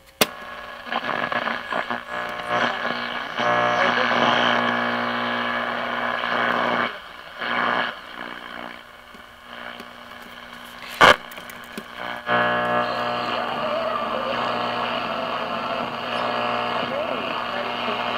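1950s Zenith Trans-Oceanic tube radio playing through its speaker while being tuned: a steady hum under fragments of broadcast sound that fade in and out between stations, with a sharp loud crackle about eleven seconds in.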